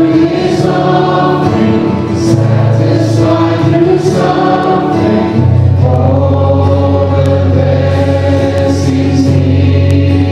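Christian worship music: a choir singing held notes over instrumental accompaniment with a steady bass line, the chord changing about halfway through.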